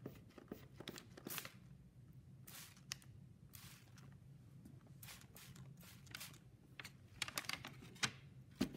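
Hand pump spray bottle squirted repeatedly, about a dozen short, faint hissing sprays, some in quick runs of two or three, over a low steady room hum.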